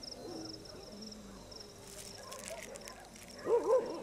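Night ambience with faint, rapid, pulsed high-pitched insect chirping that fades out past the middle. Near the end, a short louder call of two rising-and-falling notes.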